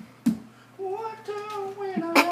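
A man singing wordlessly in a high, nasal voice in long held notes, starting about a second in. Before that comes a single sharp click.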